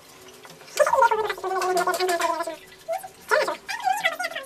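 A person's drawn-out gurgling, choking cry, starting about a second in and falling slightly in pitch, then a shorter gurgling cry near the end.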